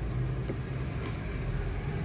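Car cabin noise: the car's engine and tyres make a steady low rumble heard from inside, with a light click about half a second in.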